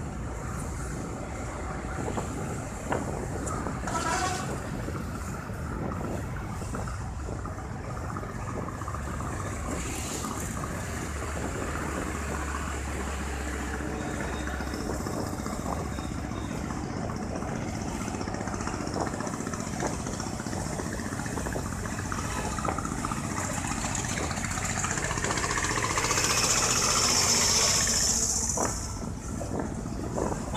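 Honda CB Twister motorcycle's 110 cc single-cylinder engine running at road speed in city traffic, with wind noise on the microphone. A louder hiss lasts a couple of seconds near the end.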